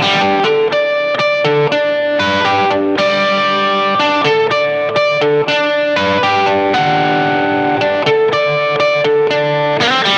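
Electric guitar played through a Line 6 Helix Hiwatt amp model with a custom impulse response. It is a 2002 Gibson Les Paul Standard DC on its Seymour Duncan P-Rails bridge pickup, switched to the slim rail coil. A riff of chords and single notes, many left ringing.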